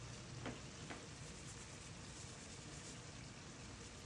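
Faint sizzling of browned ground beef with onions and potatoes frying in a pan, with two faint ticks about half a second and a second in.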